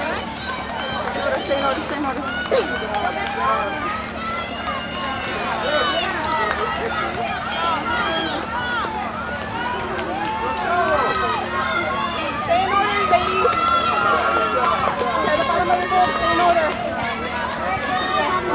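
Many spectators' voices overlapping as they shout and cheer from along the course, with no single voice standing out, growing a little louder in the second half.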